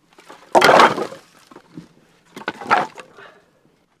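An armload of split firewood logs dropped onto a woodpile: a loud clatter of wood on wood just over half a second in, then a smaller clatter about two and a half seconds in.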